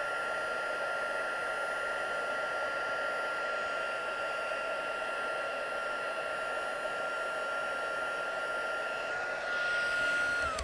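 Stampin' Up! heat tool running steadily, a hair-dryer-like rush of air with a thin, steady high whine from its fan, blowing hot air to dry damp ink on tissue paper.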